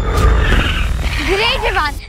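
Dinosaur roar sound effect, a noisy roar with a deep low rumble, followed about a second and a half in by high, wavering cries.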